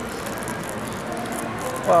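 Folded flaps of a paper rice box being pulled open, with faint papery rustles and ticks over steady background noise.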